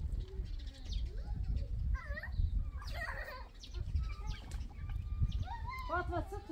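Farmyard goats and chickens calling: a few short calls about two, three and six seconds in, over a steady low rumble.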